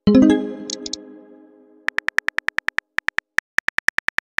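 Synthesized app chime that rings out and fades over the first second, then rapid on-screen keyboard typing clicks. The clicks start about two seconds in and come about ten a second.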